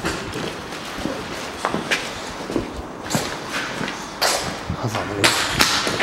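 Footsteps scuffing over grit and debris on a concrete floor: irregular steps with short knocks, and two louder gritty scrapes in the second half.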